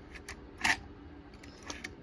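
Metal clicks and clacks from a 1926 Remington portable typewriter's mechanism worked by hand, making its keys go up and down. There are a few light clicks near the start, one sharper clack a little later, and faint clicks near the end.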